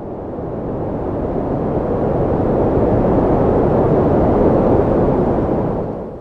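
A loud rushing noise with no pitch that swells slowly and fades out near the end, like a whoosh sound effect.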